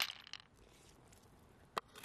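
Knife blade and loose pearls clinking against each other in an open mussel shell: a quick cluster of clicks at the start and one sharp click near the end.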